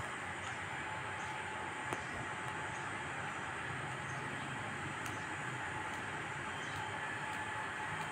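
Steady outdoor background hiss with a few faint, scattered clicks.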